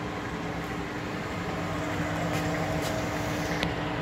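Ajax AJL480 manual lathe running at a constant speed: a steady machine hum with a constant low tone, and a few faint clicks in the second half.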